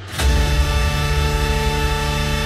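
Trance music in a DJ mix: the full track drops back in about a quarter second in, after a stretch with the highs filtered out. It continues as a loud, sustained synth chord over heavy bass.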